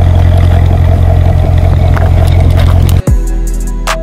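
Corvette V8 engine running loud and steady, cutting off suddenly about three seconds in. Hip-hop music with deep, falling bass hits takes over after it.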